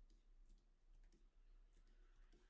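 Near silence: quiet room tone with a few faint clicks from a computer mouse.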